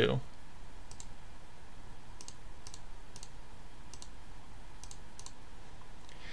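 Faint, scattered clicks of a computer keyboard and mouse being worked, about eight in six seconds, some in quick pairs, over low steady room hiss.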